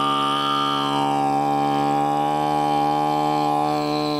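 A man's voice holding one long note at a steady pitch, the vowel colour darkening about a second in.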